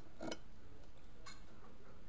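Knife and fork clicking against a plate twice, about a second apart, while cutting boiled bacon, over a low steady background hum.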